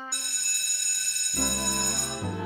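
A school bell struck once, ringing out with high, clear tones that slowly fade. Soft music comes in under it about halfway through.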